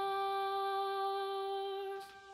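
A young soprano holding one long, steady hummed note, which cuts off suddenly at the end.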